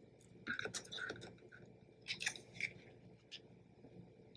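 Faint rustling and crinkling of patterned cardstock paper handled by fingertips on a cutting mat, in a few short bursts.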